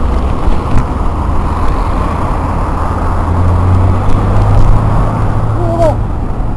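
Wind buffeting and rumble on a bicycle-mounted camera's microphone while riding in road traffic, with car engines close by. A short wavering tone sounds just before the end.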